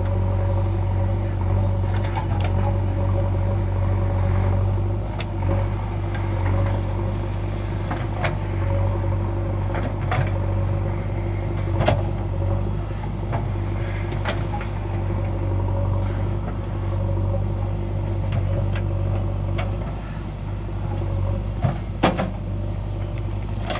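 Diesel engine of a JCB loader running steadily with a deep hum, with short sharp knocks every couple of seconds as it works.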